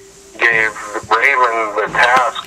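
A person's voice talking, after a brief pause at the start.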